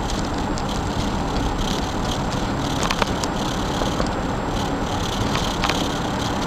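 Steady road and engine noise of a car driving through a road tunnel, heard from inside the cabin, with a sharp click about three seconds in.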